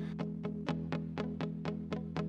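Background music: a plucked guitar picking quick, even notes, about seven a second, over a held low chord.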